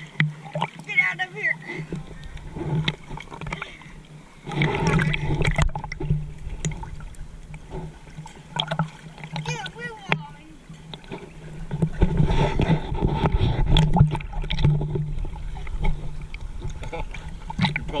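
Indistinct voices over water lapping and sloshing against an action camera held at the surface of a swimming pool, with small splashes and knocks against the housing.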